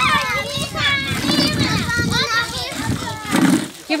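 A crowd of children chattering and calling out over one another, many voices at once.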